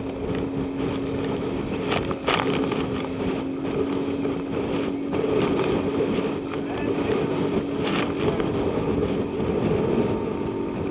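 Rigid inflatable boat (RIB) running at speed through chop: a steady engine hum under rushing wind and water spray, with a few sharp slaps as the hull hits waves and spray strikes the camera.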